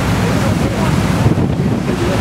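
Steady wind rumble on the microphone, with the rush of choppy lake water, aboard a moving boat.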